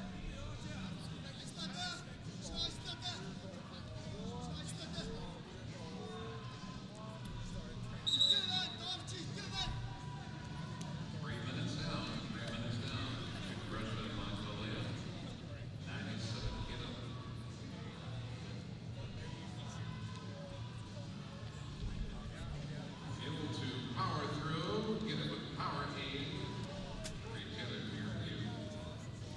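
Wrestling arena ambience: voices from the crowd and coaches around the mat, with background music over the hall. A short high-pitched tone sounds about eight seconds in, as the first period ends.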